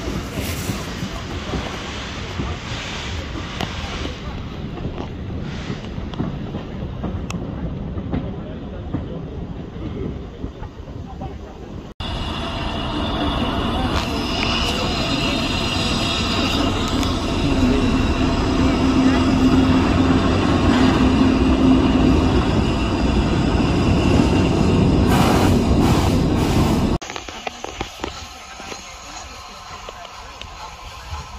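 A train running on the track at a heritage railway station. About twelve seconds in the sound jumps louder, with a steady low drone and higher steady tones over the rail noise, then it drops back suddenly near the end.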